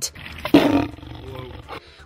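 Big cat snarling behind a fence: one short, harsh snarl about half a second in, trailing off into a weaker, rougher rumble.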